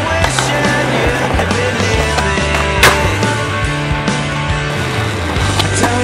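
Skateboard sounds over a pop song: the board clacking and its wheels rolling on stone and pavement, with one sharp loud crack about halfway through and a smaller one near the end.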